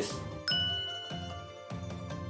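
A bright chime sound effect strikes about half a second in and rings out, fading slowly over steady background music, marking the jump to a new section.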